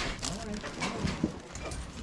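Background chatter of other people's voices, with crinkling of plastic bags being handled.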